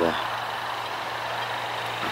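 Steady low hum under a hiss of outdoor background noise, with no sudden sounds, like an engine running at a distance.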